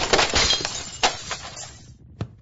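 A loud smashing crash followed by a clatter of small sharp clinks that dies away over about two seconds.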